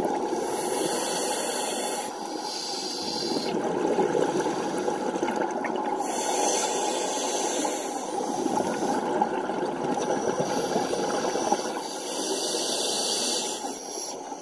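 Scuba diver breathing through a regulator underwater: stretches of hiss a second or two long, several seconds apart, over a steady rush of water and bubbles.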